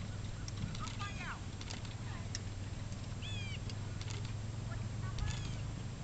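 A bird calling in short chirping phrases of falling notes, three times across a few seconds, over a steady low hum with scattered faint ticks.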